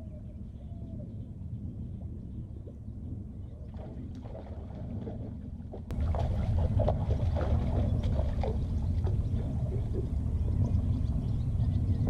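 Steady low rumble of wind and lapping water around a small fishing boat, without any clear engine tone. It steps up louder about six seconds in, and scattered light clicks and splashy sounds follow while a fish is fought on rod and reel.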